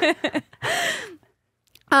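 A woman's laughter trailing off, then one long breathy sigh whose pitch falls away, after a laugh. A short silence follows, and speech starts again just at the end.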